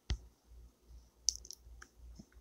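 A finger tapping a phone's touchscreen near its microphone: one sharp tap just after the start, then a few faint clicks.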